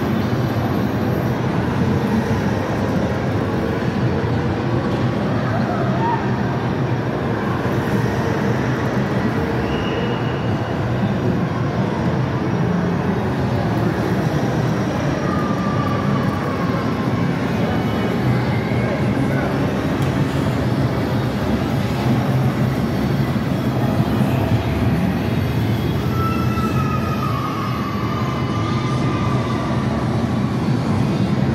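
Steady, even rumble of an indoor ride vehicle running along its elevated track, with faint short electronic tones from the arcade machines below.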